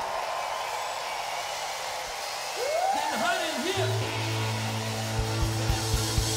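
Live rock band between songs: a wash of crowd noise, then a voice whoops with a swooping pitch about halfway through. A steady, held low bass note comes in, and a kick drum starts a steady beat of about four strikes a second near the end.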